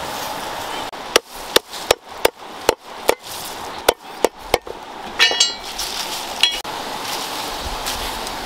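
A knife chopping green stalks on a wooden board: sharp knocks, about three a second, that stop after a few seconds, over a steady rush of stream water. Two brief ringing clinks follow.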